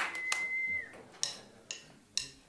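Drumsticks clicked together in an even count-in, about two clicks a second, before the drum kit comes in. A short steady high tone sounds in the first second and dips at its end.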